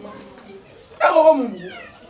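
A single loud, drawn-out cry starting about a second in, its pitch falling steadily for most of a second, like a meow or a long vocal wail.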